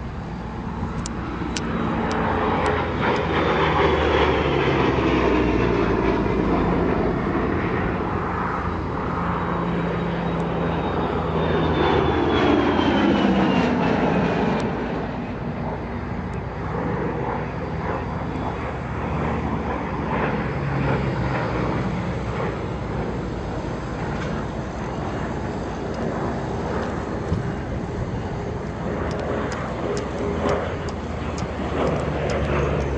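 P-38 Lightning's twin Allison V-1710 V-12 engines in low fly-bys. The drone swells twice, about four seconds in and again near the middle, each time dropping in pitch as the plane goes past, then settles into a steadier, quieter drone.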